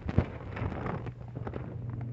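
Rubbing, scraping and knocking on the phone's microphone as the phone is handled and moved about, with one sharper knock just after the start, over a steady low hum.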